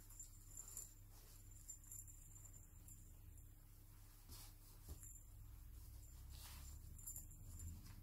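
Near silence over a low steady room hum, with a few faint, brief rustles and soft clicks from small baby clothes being handled and pulled on.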